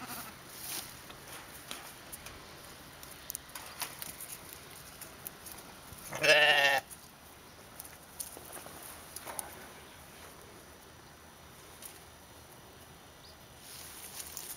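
A sheep bleats once, a loud call lasting under a second about six seconds in, over a quiet background.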